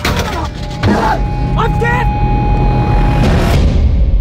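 A man shouting angrily in short outbursts over dramatic trailer music with a heavy low rumble. A steady high tone holds from about a second in to past three seconds.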